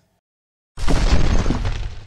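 Silence, then a shattering, breaking-stone sound effect that starts a little before halfway and runs about a second and a half, loud and heavy in the low end.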